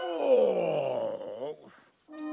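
A long, pained voice groan that slides down in pitch and fades out after about a second and a half: a cartoon steam engine character hurt and dazed after toppling over in a crash.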